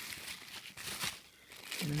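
Thin clear plastic bag crinkling and rustling as hands open and handle it, a string of short irregular crackles.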